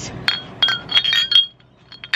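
Glass bottles clinking together in a toast, a Carlton Draught beer bottle against another glass bottle: a quick run of clinks with a ringing tone that stops about one and a half seconds in.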